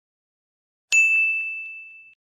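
A single bright bell-like ding, struck about a second in and ringing out, fading over about a second.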